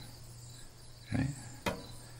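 A quiet pause in a man's talk: faint steady background hiss, a brief spoken "okay" a little past halfway, and a single sharp click near the end.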